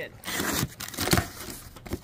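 A box cutter slitting the packing tape on a cardboard box, then the flaps pulled open, with irregular rustling and scraping of tape and cardboard.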